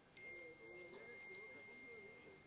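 Near silence with a faint, steady, high-pitched electronic tone that starts just after the opening and holds, over faint distant voices.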